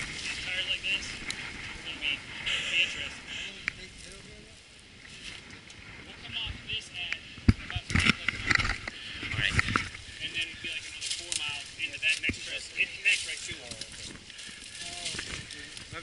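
Indistinct low talk mixed with mountain-bike handling noises: scattered clicks and knocks, the sharpest knock about halfway through.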